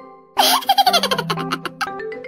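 A burst of a baby's giggling laughter starting about half a second in, laid over light marimba background music that drops out just before it and resumes under it.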